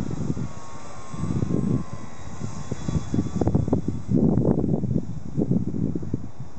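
Faint drone of a P-51 Mustang airplane passing in the sky, a thin steady whine heard through the first half. Gusty wind buffeting the microphone is the loudest sound throughout and grows louder after about four seconds.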